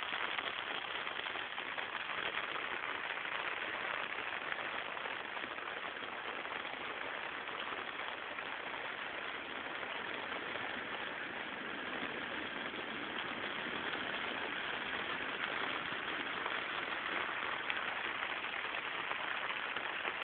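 Steady rushing of the swollen Retrone river running high with muddy floodwater, an even noise without pauses or changes.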